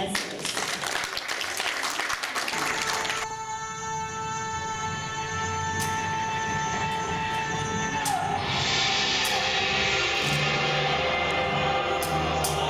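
Audience applause for about three seconds, then music starts with long held notes and grows fuller about eight seconds in. Scattered sharp clicks sound over the music from about six seconds on.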